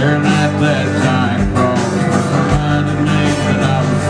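Live country band playing: electric guitars over bass and drums, with a kick drum beating about once a second.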